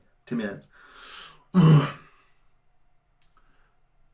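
A man laughing briefly, then a long breathy exhale, then one loud, short throaty burst about a second and a half in.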